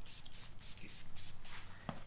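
Trigger spray bottle spritzing leather cleaner onto a leather chair arm, a soft hiss, with a sharp click near the end.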